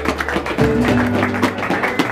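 Mariachi band playing an instrumental passage: guitar and vihuela strumming a fast, driving rhythm over steady bass notes, with no singing.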